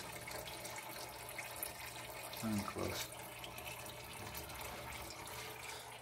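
Fluid draining from the car in a thin, steady stream into a plastic drain pan, a faint trickle into the liquid already collected.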